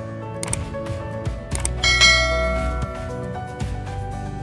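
Background music with a couple of clicks and then a bright bell ding about two seconds in that rings on and fades, a subscribe-button chime effect.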